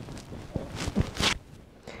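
Crocheted yarn shawl rustling and rubbing as it is pulled off over the head, in a few bursts that are strongest about a second in.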